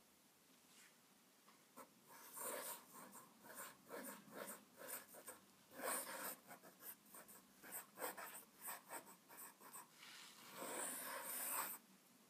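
1.5 mm italic nib of a Sheaffer calligraphy fountain pen scratching across paper. It starts about two seconds in with a run of short pen strokes and ends in one longer stroke of about a second and a half.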